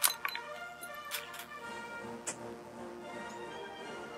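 Background music with held notes, and over it a few sharp clicks. The clicks come from the Martini-Henry rifle being handled as it is brought down from the shoulder to the ready. The loudest click is right at the start, and others follow about one and two seconds in.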